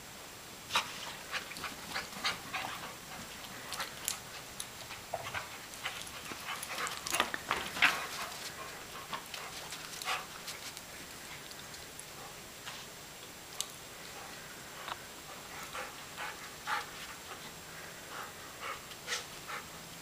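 Two dogs, a Labrador retriever and a Rhodesian Ridgeback mix, snuffling and moving about in snow: scattered short, faint sniffs and crunches, busiest about seven to eight seconds in.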